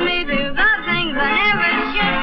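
Early-1930s dance-band record playing, with a lead line that bends and wavers in pitch over the band. It has the narrow, dull sound of an old recording.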